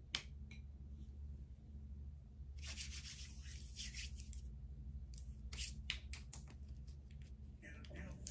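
Tarot cards handled and shuffled by hand, faint: a click at the start, a rustle of cards sliding against each other for about two seconds, then a string of sharp snaps and taps as the cards are worked, over a low steady hum.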